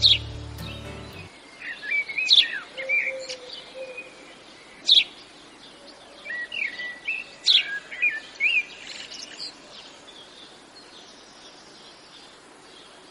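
Several birds chirping and singing, with short whistled calls and sharp chirps in bursts, over a steady faint outdoor background hiss. A piece of music cuts off in the first second or so, and the bird calls die away after about nine seconds.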